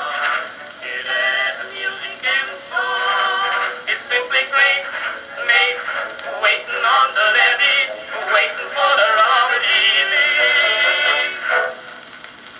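An Edison Blue Amberol cylinder playing on an Edison cylinder phonograph: a male vocal duet singing with instrumental accompaniment. The sound is thin, with no bass. Near the end the performance stops, leaving faint surface hiss.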